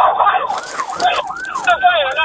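Police car siren in a fast rising-and-falling yelp, heard from inside the patrol car's cabin. A short burst of hiss starts about half a second in and lasts about a second.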